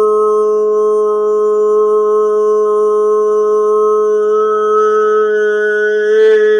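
A man's voice toning one long held note at a steady pitch, a wordless vocal tone of the kind used in sound healing.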